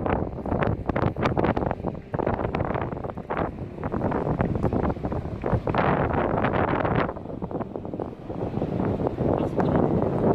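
Wind buffeting a phone's microphone: a loud, gusty rumble that rises and falls, easing briefly about eight seconds in.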